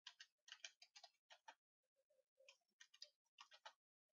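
Faint, irregular clicking of computer keyboard keys as a word is typed, with a short lull about two seconds in.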